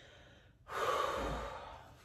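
A woman taking a deep breath: a faint inhale, then a long, audible breath out that starts about two-thirds of a second in and fades away.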